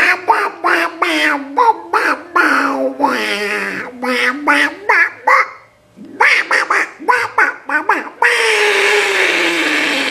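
A teenage boy's silly nonverbal voice noises: a run of short, strained nonsense syllables, a brief break, more short syllables, then one long drawn-out cry that slowly falls in pitch.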